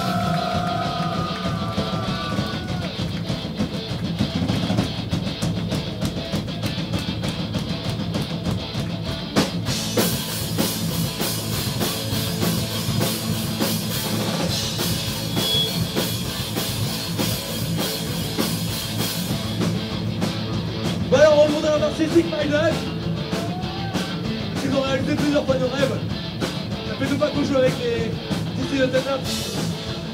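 Punk-rock band playing live: electric guitars, bass guitar and drum kit. The cymbals ring out more brightly for about ten seconds in the middle, and a bending melody line rides over the band in the last third.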